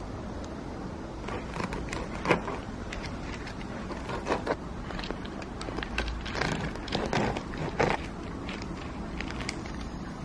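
A serrated bread knife sawing through a crusty baguette sandwich: irregular crunchy, crackling strokes of the crust breaking, mixed with parchment paper rustling, and a sharp click about two seconds in.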